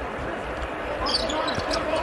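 Basketball court sounds: a ball bouncing on the hardwood floor, with brief high squeaks about a second in.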